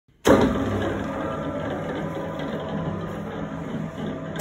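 L4-KhT2V spiral dough mixer's electric drive starting up at the press of the start button, then running with a steady hum made of several fixed tones. The sound sags briefly near the end.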